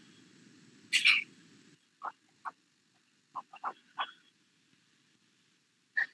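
A short loud hissy noise about a second in, then about six short animal calls in quick bursts over the next two seconds, heard over a video-call line.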